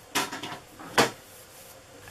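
Handling sounds of the card on a craft mat: a short scrape a fraction of a second in, then a single sharp click or tap about a second in.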